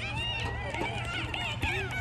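Several high-pitched voices calling out at once across a youth soccer field, none of it clear words, with a single thump shortly before the end.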